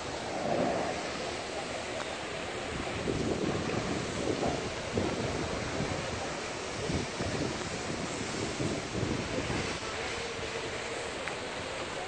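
Steady rushing noise of fire hoses spraying water onto a large fire, with uneven louder surges.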